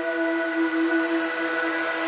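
Electronic dance music intro: a held synthesizer chord of several steady tones, with a hiss slowly building beneath it.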